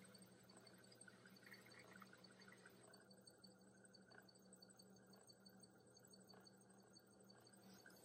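Near silence, with the electric potter's wheel's motor running as a faint steady low hum.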